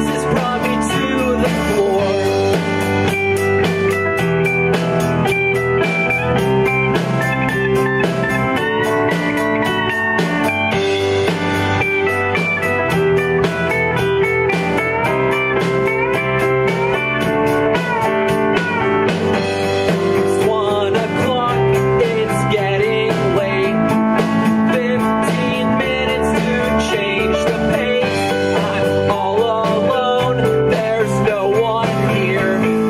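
A live rock band playing: an electric guitar over bass, keyboard and a drum kit keeping a steady beat.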